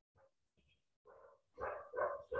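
A dog barking faintly in the background, a few short barks in the second half.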